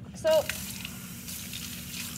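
Laboratory sink tap turned on just after the start, then water running steadily from the gooseneck faucet in a stream.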